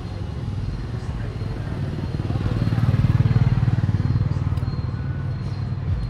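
Street traffic with motorbike engines running; one engine passes close, swelling to its loudest about three seconds in and then fading.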